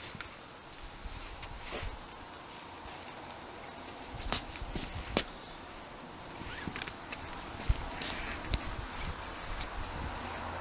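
Handling noise from a downed firefighter's turnout gear and rescue webbing being rigged into a harness on pavement: scattered light knocks and clicks with rustling, more of them in the second half.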